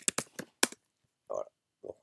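Typing on a computer keyboard: a quick run of keystrokes in the first second, then a pause.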